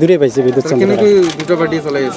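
Speech only: a man talking steadily at close range into microphones.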